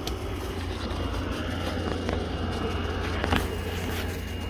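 Subaru WRX STI's turbocharged flat-four engine idling with the air conditioning running: a steady low rumble, with a few faint clicks over it.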